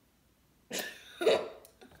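A person coughing: two short coughs about half a second apart, starting a little under a second in.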